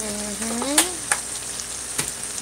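Ackee and corned pork sizzling steadily in a frying pan, with two sharp clicks about a second in.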